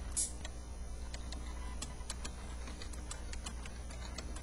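Faint irregular light clicks and ticks, a few each second, over a steady low hum, with a short high hiss just after the start.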